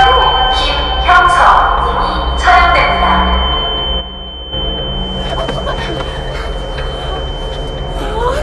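A steady, high-pitched ringing tone, a film sound effect, runs under a young man's strained cries of pain: three cries in the first three seconds, then quieter noise. The tone cuts off at the end.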